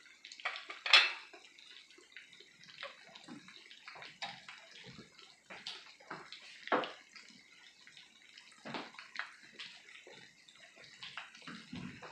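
Onion bhajis frying in hot oil in a frying pan: the oil sizzles with irregular crackles and pops, the loudest about a second in.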